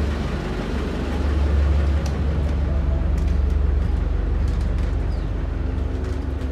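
A houseboat's generator engine running with a steady low drone, with a few faint clicks over it.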